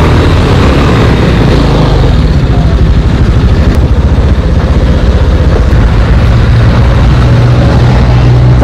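Motorcycle engine running slowly and then idling, heard loud and close through a helmet-mounted camera microphone, with a steady rushing noise over a low hum.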